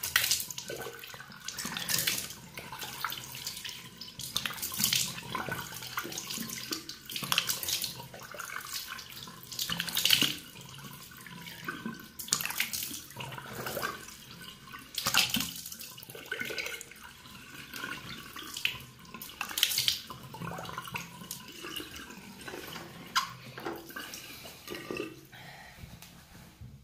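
Tap running into a sink while cupped hands splash water onto the face, rinsing off a facial cleanser: irregular splashes every second or two over the steady flow, which stops at the very end.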